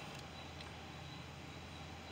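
Faint, steady background hiss of outdoor ambience with no distinct sound events.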